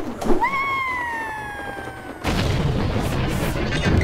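Animated-film soundtrack: a long high-pitched cry or tone sliding slowly downward, then, a little past halfway, a sudden loud boom that opens into dense dramatic music with a deep rumble.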